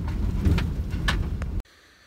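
Road noise of a vehicle driving on a gravel road, heard from the cab: a steady low rumble from tyres and engine with a few short knocks and rattles. It cuts off suddenly about a second and a half in, leaving near silence.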